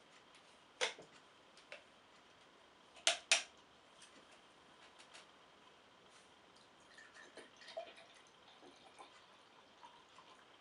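Plastic screw cap of a large PET bottle of kvass clicking as it is twisted open, four sharp clicks in the first few seconds. From about seven seconds in, the kvass is faintly heard pouring into a glass.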